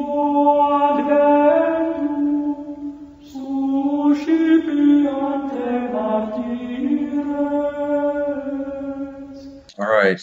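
Sung vocal chant used as intro music: long held notes moving up and down in steps, in two phrases with a short break about three seconds in. It cuts off near the end.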